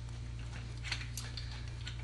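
Two faint clicks about a second in as a steel shoulder bolt is turned by hand into its threaded hole in the mount's base, over a steady low hum.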